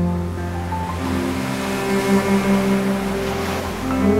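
Sea waves washing onto a shore, a rush of surf that swells in the middle and fades again. Under it are soft, held notes of instrumental music.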